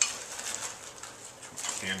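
A sharp clack, then soft rustling and handling noise as a hand rummages through a cloth apron pocket. A man's voice starts near the end.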